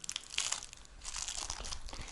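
Crinkling and rustling of handled material, in a short spell about half a second in and a longer one from about a second in, with small clicks among it.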